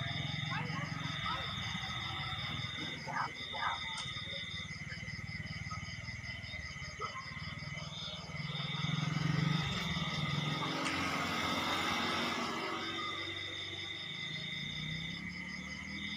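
Night insects, crickets, calling steadily in several high trilling tones, some pulsing and some coming and going, over a low murmur of voices from a seated crowd. The murmur and a rustle swell louder for a few seconds past the middle.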